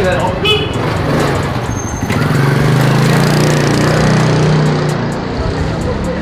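Small motorcycle passing close by at low speed. Its engine hum grows loud about two seconds in, holds for about three seconds, then fades.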